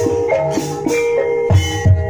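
Javanese gamelan-style music accompanying an ebeg dance: a melody of struck, ringing metallic notes stepping from pitch to pitch, with a couple of low drum strokes near the end.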